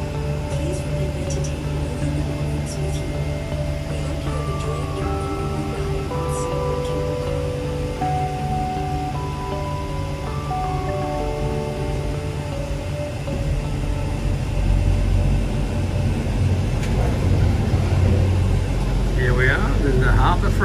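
A simple melody of held notes plays over the steady low rumble of a cable car gondola. About two-thirds of the way through, the rumble grows louder as the gondola rolls into the station.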